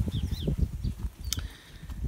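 Garden ambience: a low, uneven rumble with a couple of faint bird chirps shortly after the start and a single sharp click near the middle.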